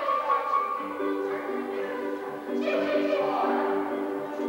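A stage chorus singing together in long held notes, the pitch moving from note to note without a break.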